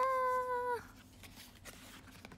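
A woman's voice holding one high sung note for a little under a second, rising slightly at its start and dipping as it ends.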